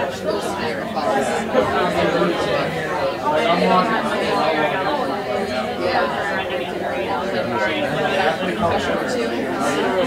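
Chatter of many people talking at once in several small groups, voices overlapping in a steady babble, with one woman's voice nearer than the rest.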